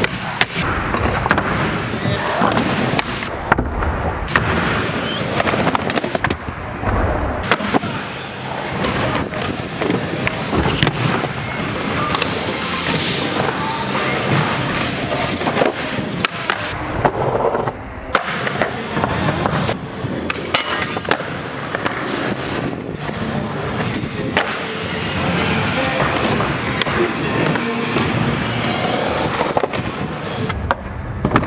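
Skateboard wheels rolling on concrete, with the clack of tail pops and board landings throughout, mixed with a song that has sung vocals.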